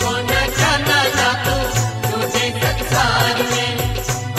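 Hindi devotional bhajan music with a steady, even beat under held tones and a wavering melody line.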